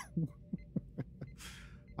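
A person laughing softly in short, low chuckles, about four a second, then drawing a breath in near the end.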